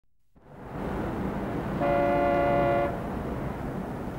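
City street ambience with traffic noise fading in from silence, and a car horn sounding once in a steady chord for about a second near the middle.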